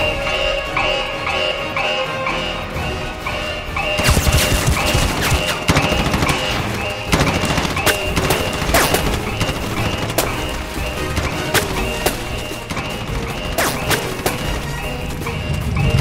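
Action film score with a fast, repeating figure; about four seconds in, sharp crashes and hits come in over the music and keep coming at irregular intervals.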